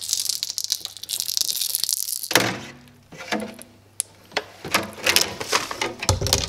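A glass filter tray in a white plastic frame being handled and moved about: rattling, knocks and light clicks, with a steady hissing rush through the first two seconds.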